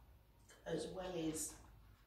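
A woman's voice reading aloud: one short spoken phrase of about a second, with quiet room tone either side.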